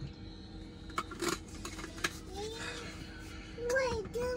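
Liquid mouthwash pouring from a plastic bottle into a plastic Gatorade bottle, with a few light plastic clicks and faint rising tones as the bottle fills. A brief voice is heard near the end.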